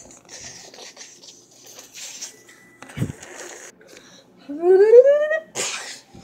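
A child's voice making a rising whoop as a magic sound effect, cut off by a short breathy burst like a sneeze. Before it comes a soft hissing rustle with a single thump about halfway through.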